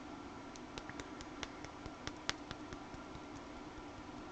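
A string of small clicks and taps from hands and fingernails handling a paper planner page, one sharper than the rest a little past halfway, over a steady low room hum.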